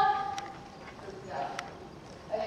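A riding instructor's voice calling out a long, drawn-out word that ends about half a second in, over the hoofbeats of a pony trotting on the arena surface. A couple of sharp clicks and a fainter call follow.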